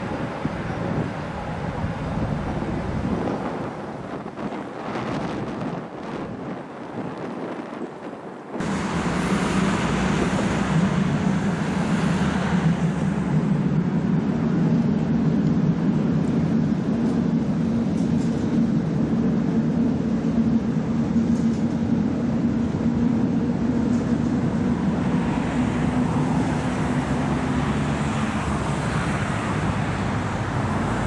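U6 metro train crossing a steel truss bridge overhead: a loud rumble with a steady low drone from the bridge, starting abruptly about nine seconds in, the drone dying away near the end. Before that, road traffic and wind.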